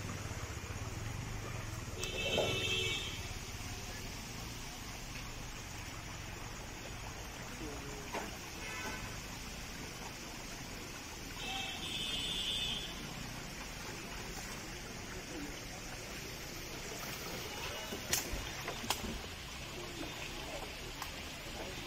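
A vehicle horn sounds twice, each for about a second, once a couple of seconds in and again around the middle, over scattered voices and a low hum that fades after the first few seconds.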